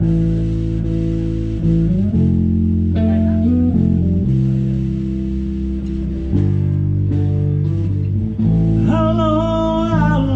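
Live band music from a power trio, with electric guitar and bass guitar. Long held low notes run throughout, and a higher, wavering melody line comes in near the end.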